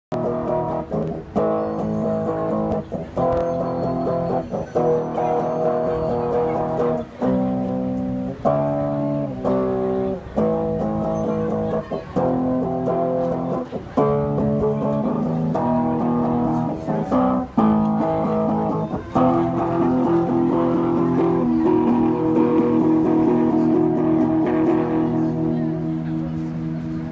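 Solid-body electric guitar played through a small Line 6 amp: chords changing about once a second with short breaks between them, settling into one long held chord in the last several seconds.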